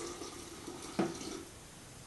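Hot water poured from an electric kettle into a glass jug, trailing off about one and a half seconds in. A single sharp knock comes about a second in.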